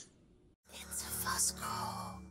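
A short outro sound logo starts about half a second in: a low, held tone with airy, breathy noise over it.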